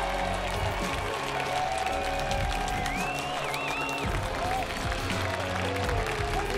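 Crowd applauding and cheering over music, with a high wavering tone like a whistle about three seconds in.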